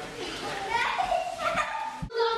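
Children's voices, chattering and playing in the background.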